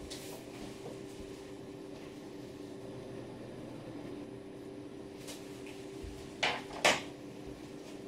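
A faint, steady hum of a kitchen appliance. Two short knocks come near the end, the second louder.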